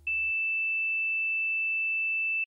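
A single steady, high-pitched electronic sine tone, held at one pitch without change.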